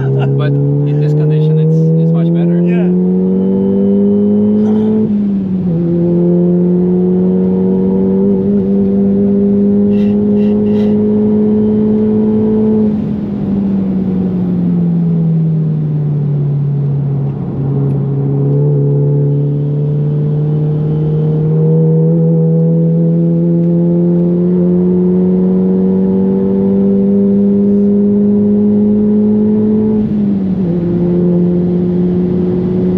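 Tuned Mk7 VW Golf GTI's turbocharged 2.0-litre four-cylinder, running about 400 hp on a bigger turbo, pulling hard through the gears, heard from inside the cabin. The revs climb to an upshift about five seconds in and sink for a few seconds in the middle as the car slows. They then climb steadily again to another upshift at the very end.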